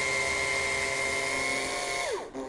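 Makita LXT cordless drill motor running at a steady whine, driving a screw into the rubber tip of a wooden walking stick, then winding down in pitch as the trigger is released at the end.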